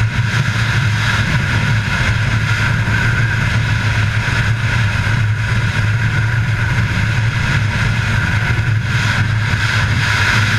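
Snowmobile engine running steadily at speed, heard from on board the sled as one even drone.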